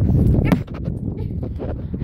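Low wind and handling rumble on a phone microphone with scattered knocks. About half a second in, a sharp click comes with a short falling cry from a small puppy.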